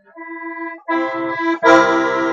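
Bayan (Russian chromatic button accordion) playing one held note, then more notes added about a second in, swelling into a louder full chord near the end. The notes are a chord built on E, the third degree of C major, played as a tonic voicing in a blues-harmony lesson.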